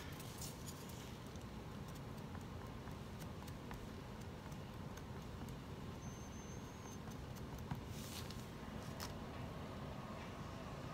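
Quiet room tone with a steady low hum, broken by a few faint clicks and a brief soft rustle near the end, as gloved hands handle a wooden stir stick by the canvas.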